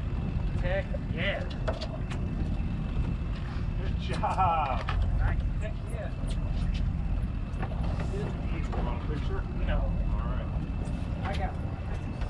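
Steady low rumble of a charter fishing boat under way, its engine running with wind on the microphone, overlaid by scattered clicks and knocks of tackle being handled and faint, indistinct voices.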